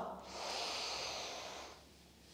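A woman breathing out in one long exhale lasting about a second and a half. It fades out near the end.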